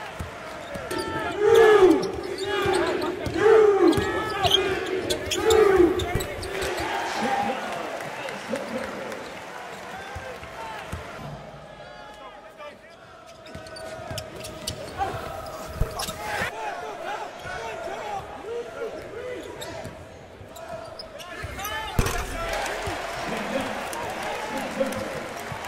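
Basketball game sound in an arena: sneakers squeaking on the hardwood in short sliding chirps, loudest in the first few seconds, the ball bouncing, and crowd voices in the background. There are a few sharp knocks, the strongest about 22 seconds in.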